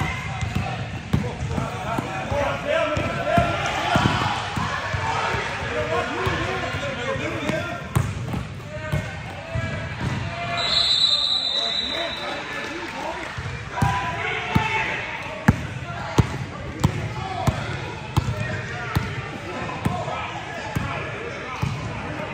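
Basketball being dribbled on an indoor gym floor, a run of short bounces, among players' voices calling out on court.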